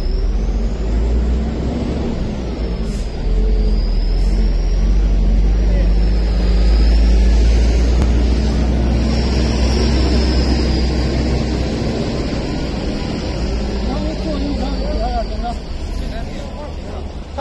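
Steady low rumble of a car engine and road noise as a car pulls up and idles, with a faint high whistle that slowly rises and falls above it.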